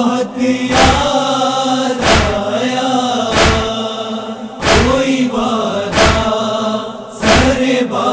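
A nauha, a Shia mourning lament, chanted by male voice in long drawn-out notes. Under it, heavy thumps of matam (chest-beating) keep an even beat about every 1.3 seconds.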